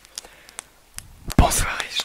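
A man whispering close into the microphones, starting suddenly with a breathy burst about one and a half seconds in, after a few faint clicks.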